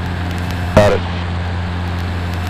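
Steady cabin drone of a Cessna 150's four-cylinder Continental O-200 engine and propeller in cruise flight, heard inside the cockpit. A brief voice sound cuts in just under a second in.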